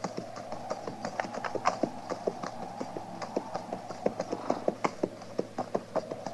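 Horses' hooves clip-clopping in a steady, uneven run of several hoof strikes a second: a radio-drama sound effect of riders travelling on horseback.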